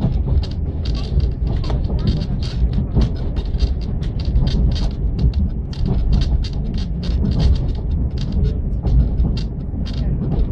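Steady low rumble of a railway passenger coach rolling along the track, heard from inside the carriage.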